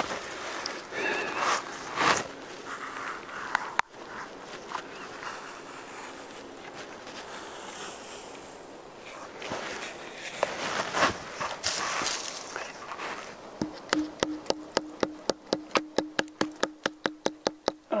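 Bark being worked loose on a tree trunk: scraping and rustling of bark and branches. About two-thirds of the way through comes a rapid run of light knocks, about four a second, as the bark is tapped to loosen it from the wood.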